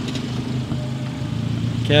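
A car engine idling with a steady low hum.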